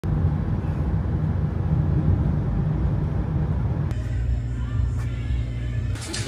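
Steady low rumble of a car on the move, road and engine noise from a moving vehicle. The rumble eases a little about four seconds in.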